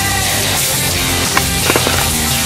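Skateboard at a concrete skatepark ramp, with a few sharp clacks of the board about one and a half seconds in, over loud backing music.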